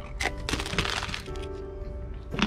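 A bite into crisp toast spread with cinnamon cream cheese, close to the microphone: a sharp crack followed by about a second of crunching.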